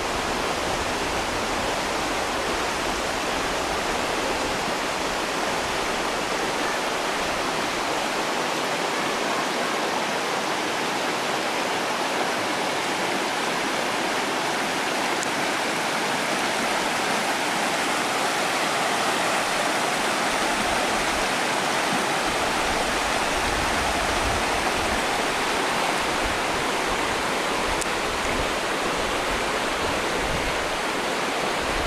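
Shallow river rushing over stones and small rapids, a steady noise of running water.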